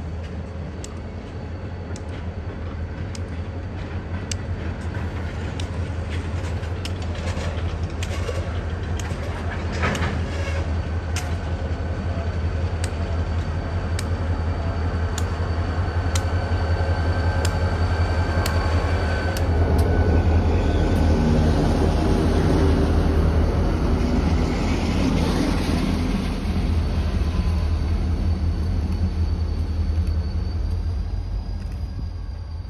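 A slow freight train of flatcars rolling past, the wheels clicking at even intervals over the rail joints. Two diesel locomotives follow with a low engine drone, which is loudest about two-thirds of the way through as they pass.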